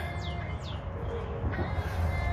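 A small bird chirping: two short, high chirps, each falling in pitch, within the first second, over a steady low rumble.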